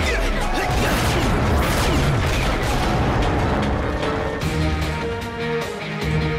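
Dramatic action-score music over cartoon battle sound effects: crashes and falling whooshes in the first part, then held chords near the end as the effects thin out.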